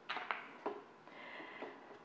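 A few faint, irregular clicks and taps of a small plastic plant pot being set down on a tray and containers being handled on a tabletop.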